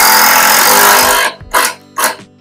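Construction power tool running in one loud burst of about a second and a half, then two short bursts of the same noise, over background music.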